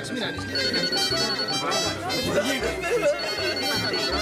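Party music with a bass beat pulsing about twice a second, with voices over it.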